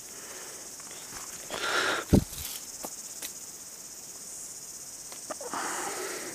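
Steady high-pitched insect chorus in the bush, with a brief rustle and a sharp knock about two seconds in, the loudest sound, and a few light ticks after it.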